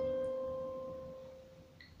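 A single held note on a portable electronic keyboard, dying away over about a second and a half until it is almost gone.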